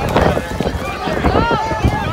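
Several people talking and calling out over one another, with no one voice standing clear.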